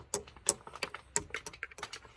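Quick, irregular clicks and taps of a small vinyl toy figure and its cardboard backdrop being handled and set down on a hard chair arm, with a few louder knocks among them.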